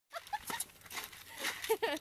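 Ostriches pecking feed out of a plastic bucket, a quick irregular run of beak knocks and clicks. A man laughs near the end.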